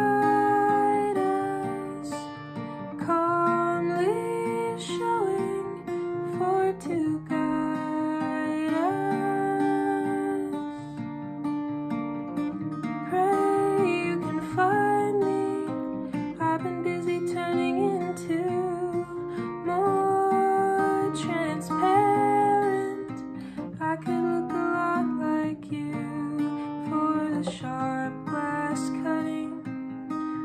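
Acoustic guitar played with a capo, with a woman singing over it.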